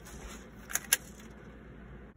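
Two sharp clicks a fraction of a second apart, about a second in, the second louder, from an airsoft pistol being handled in the hands.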